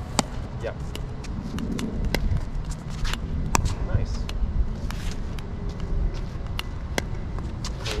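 Pickleball paddles striking a hard plastic ball in a quick volley exchange: a run of sharp pops about every half second to second, with the ball bouncing on the hard court in between. A low rumble of wind on the microphone runs underneath.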